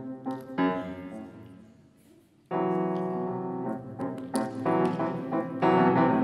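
Grand piano playing a classical accompaniment alone. A chord struck about half a second in dies away almost to silence, then a loud chord enters suddenly about two and a half seconds in, followed by more chords.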